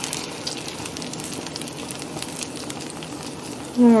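Tortilla pizza crust frying in butter in a stainless steel frying pan over a gas burner: a steady sizzle with many small crackles and pops.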